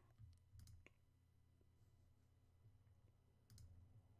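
Near silence with a few faint computer mouse clicks: two in the first second and two more near the end.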